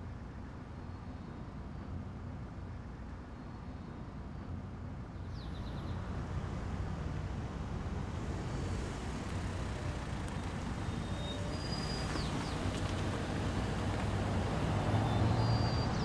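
A car drawing near and pulling up to the curb, its engine and tyre rumble growing steadily louder toward the end.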